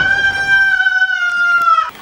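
A woman's long, high-pitched scream, sliding up into one held note that lasts nearly two seconds and falls away at the end.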